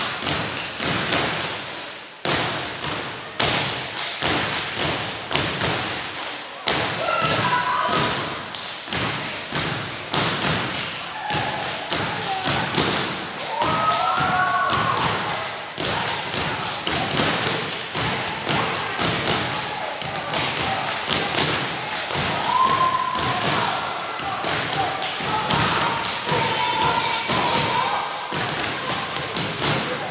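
Step team stomping boots and clapping in fast rhythms on a hardwood gym floor, the hits echoing in the hall, with a few short shouted calls from the performers.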